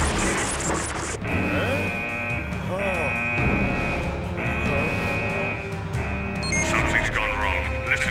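Anime film soundtrack: a loud rushing rumble that cuts off about a second in, then a high alarm tone sounding in long pulses with short gaps, over music and shouting voices.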